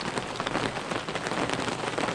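Heavy rain mixed with tiny hail pellets hitting a concrete path and gravel, a dense steady hiss studded with many separate small hits.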